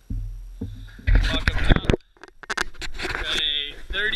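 Camera handling noise as the camera is picked up and moved: a low rumble, then a loud clatter about a second in, a brief cut-out, and voices near the end.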